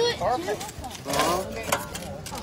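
Two-man crosscut saw cutting through a log, its teeth rasping through the wood on each stroke, under people's shouting voices.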